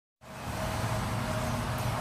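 Steady outdoor background noise of road traffic with a low hum, starting a moment in.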